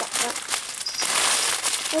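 A large plastic treat bag crinkling and crackling continuously as it is handled.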